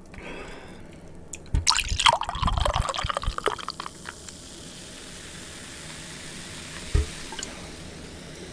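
Beer poured from a can into a glass in splashing, gulping gushes for about two seconds, then the head of foam fizzing with a steady hiss. A single knock near the end.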